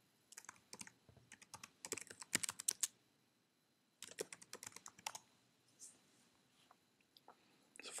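Computer keyboard typing: a run of keystrokes for about two and a half seconds, a pause, then a second shorter run, with a few scattered key presses after.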